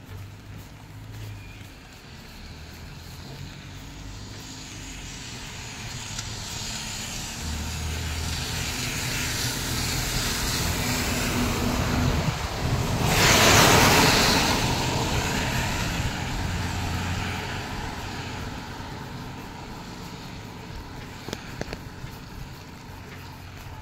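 A road vehicle passing on a wet road: engine hum and the hiss of tyres on wet tarmac build slowly, peak about two-thirds of the way through, then fade away.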